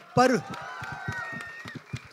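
A man speaking into a microphone says "My", then pauses for about a second and a half before going on. During the pause only a faint hum and small ticks remain.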